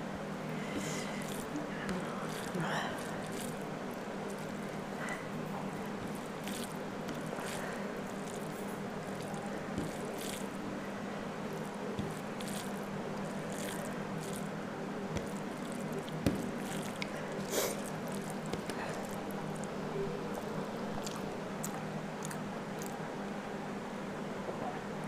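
Close-miked eating sounds: chewing, wet mouth and lip smacks, and fingers mixing rice and curry on a plate, as scattered short clicks and squishes over a steady low hum.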